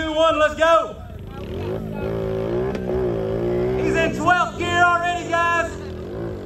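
Big-tired mud-bog four-wheeler's engine revving hard as it pushes through deep mud, its pitch swinging up and down for about three seconds in the middle, with a man's voice over it at the start and near the end.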